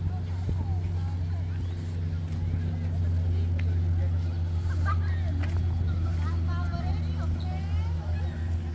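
Passers-by talking in snatches as they walk past, over a steady low mechanical hum like a running engine.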